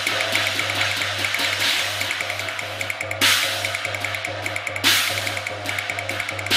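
Cantonese opera percussion playing an entrance passage of drums and cymbals, with loud cymbal crashes about three seconds in and again near five seconds.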